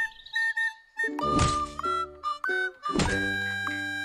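Background music with two dull thunks, about one and three seconds in: a stone pounding herbs on a tree stump.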